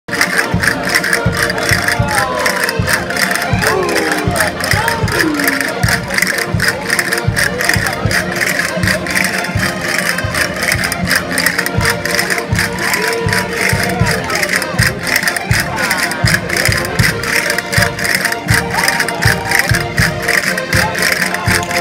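Live concertina and guitar playing a vira, a Portuguese folk dance tune, with a quick steady beat, over the voices of a large dancing crowd.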